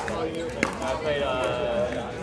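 A pickleball paddle striking the ball with a sharp pop about half a second in, over people's voices talking.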